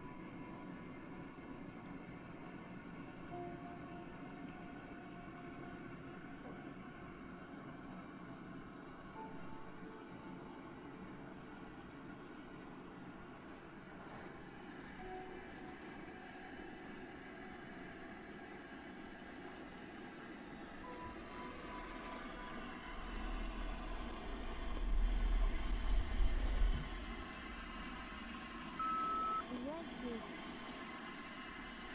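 Ghost-box device hissing with continuous radio-like static and faint brief tones as it scans. A low rumble comes about three quarters of the way in, then a short beep and a garbled voice-like fragment at the very end.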